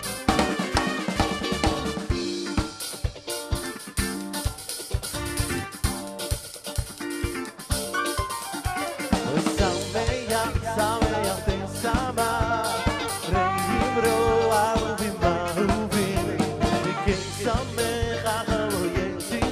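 A live dance band playing an upbeat number. The drum kit, snare and bass drum, leads the first half, and melody lines from the rest of the band join about halfway through.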